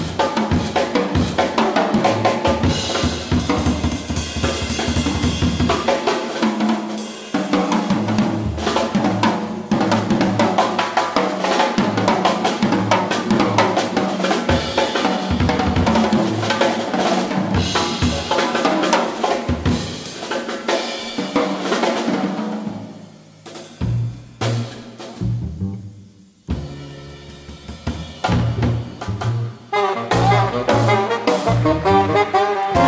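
Jazz drum kit solo, with dense, fast strokes on snare, bass drum and cymbals. The playing thins out to sparse, quieter hits about three-quarters of the way through.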